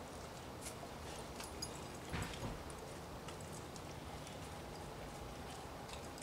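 A pit bull eating french fries off concrete: faint, scattered clicks and smacks of chewing, with a louder crunch about two seconds in.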